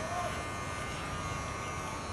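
Electric hair clippers buzzing steadily while shaving a man's head close to the scalp.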